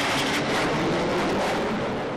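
Military jet aircraft flying past overhead, a steady loud rushing engine noise.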